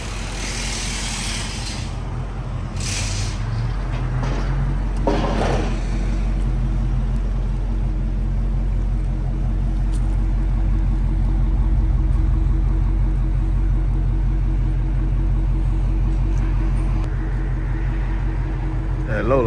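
Supercharged 6.2-litre HEMI V8 of a 2023 Dodge Charger Hellcat Redeye Jailbreak idling with a steady low rumble. There are a few brief louder swells in the first six seconds.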